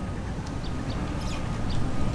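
Outdoor background: a steady low rumble with faint, scattered bird chirps.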